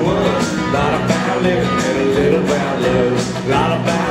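Live country band playing loudly, with guitars over drums and little or no singing heard.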